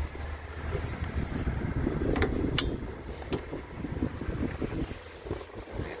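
Wind buffeting the microphone in an uneven low rumble, with rustling from gloved hands handling a clamp meter and a few sharp clicks near the middle.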